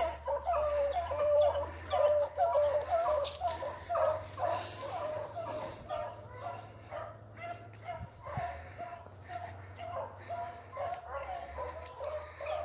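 Beagles baying as they run a rabbit track: a quick string of short, repeated calls, about two a second, loud at first and fading over the second half as the hounds move off. The hounds are giving voice on the rabbit's scent line.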